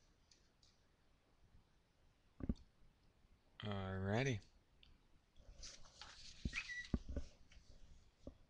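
A sharp click, then a short wordless hum or grunt from a man's voice about halfway through. It is followed by a run of clicks and rustling as things are handled on a desk.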